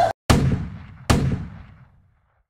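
Two gunshot sound effects about a second apart, each a sharp bang trailing off into a long echo.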